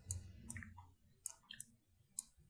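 Computer mouse button clicking, faint, about seven separate clicks at uneven spacing, two in quick succession about one and a half seconds in.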